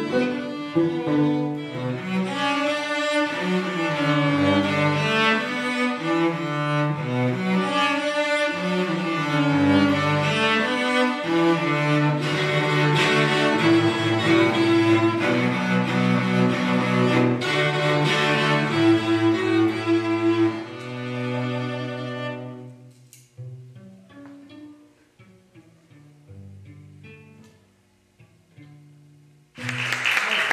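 Two cellos playing a bowed duet, a grooving, rhythmic piece with both parts sounding together. About two-thirds of the way through the playing drops away to a held low note, then softer, sparse notes that die out near the end.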